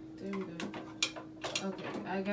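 Sharp clicks and knocks of small objects being handled at a bathroom mirror cabinet, three in quick succession about half a second apart, with short wordless vocal sounds of effort between them over a steady low hum.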